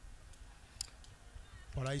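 Quiet low background rumble with a couple of faint sharp clicks in the first second, then a man's commentary starts just before the end.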